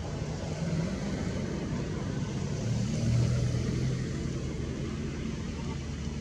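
A motor vehicle engine running nearby with a steady low hum, growing louder about three seconds in and then easing off.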